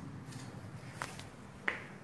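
Two sharp clicks, the second louder, over a low steady hum.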